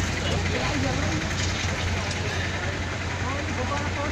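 Faint, scattered talk from a crowd of onlookers over a steady low hum.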